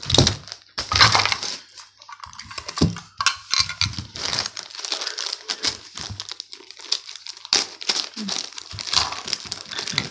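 Hard plastic toy pieces being handled and clattered on a tabletop: a busy run of clicks, knocks and rustling, with a sharp knock at the start.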